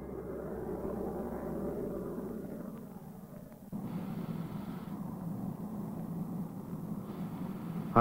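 Steady droning jet-aircraft noise, as heard in the cockpit: engine and airflow. Its tone shifts abruptly about four seconds in, to a lower, humming drone.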